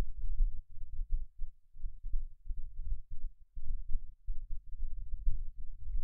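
Low, uneven rumbling thumps with no voice, coming and going in short runs, the kind of bumping and breath noise a close desk microphone picks up.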